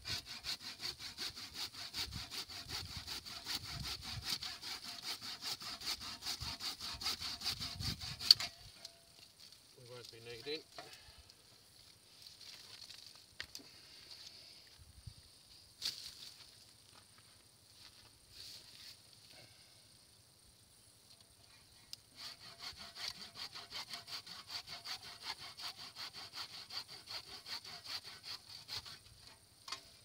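A blunted old hand saw cutting branches off a sessile oak with quick back-and-forth strokes. It runs in two bouts: the first lasts about eight seconds and ends in a sharp crack, and the second starts about two-thirds of the way through.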